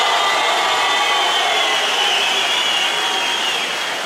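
A large crowd applauding and cheering, easing off near the end.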